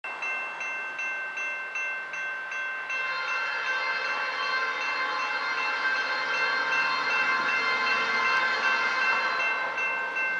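A railroad grade-crossing bell rings steadily, nearly three strokes a second. From about three seconds in, the approaching Norfolk Southern freight locomotive sounds a long horn blast that fades near the end, with a faint low rumble of the train building underneath.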